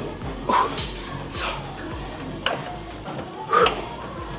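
Background music with a steady beat, over four short, sharp breaths from a man squatting a loaded barbell, one with each push.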